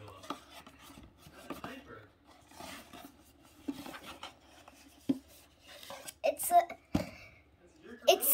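A small cardboard box being opened by hand and a light bulb pulled out of it: rubbing and scraping of the cardboard with scattered light clicks and knocks.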